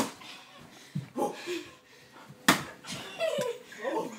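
Padded boxing gloves landing punches: a few short hits, the loudest a single sharp smack about two and a half seconds in.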